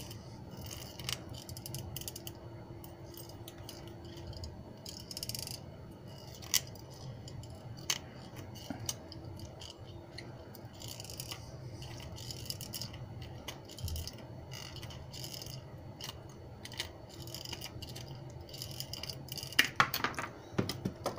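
Tin snips cutting sheet steel, trimming the crimped, bottle-top-like edge off a die-pressed steel cup washer. Short sharp snips come irregularly, about one every second or two.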